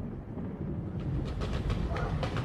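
A low, steady rumble, with faint crackles joining it from about a second in.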